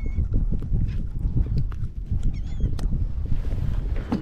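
Wind buffeting the camera microphone: a steady, uneven low rumble, with scattered small knocks from handling on the kayak.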